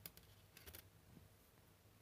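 Near silence, with a few faint light clicks as thin wires and small crimp terminals are handled on a wooden bench.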